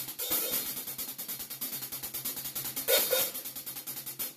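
A drum kit's hi-hat played with sticks in a fast, even stream of strokes, the hat opening for a washy sizzle, with a louder accented hit about three seconds in.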